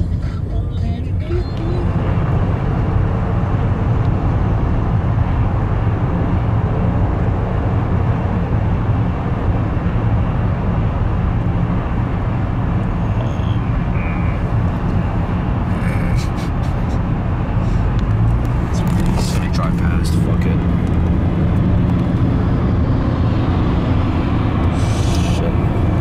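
Steady low rumble of road and engine noise inside a moving car at highway speed.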